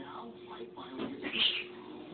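A domestic cat meowing briefly, about one and a half seconds in.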